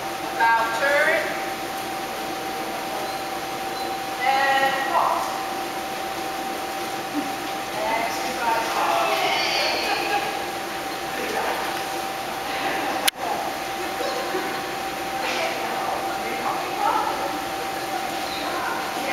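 Short bursts of a high-pitched, sing-song human voice, a few times, over a steady hum. One sharp click about thirteen seconds in.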